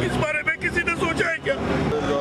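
A man's voice speaking over steady street and vehicle traffic noise.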